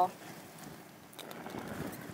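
Faint hiss of cooking-oil spray hitting hot gas-grill grates and flaring up in flames, swelling about a second in.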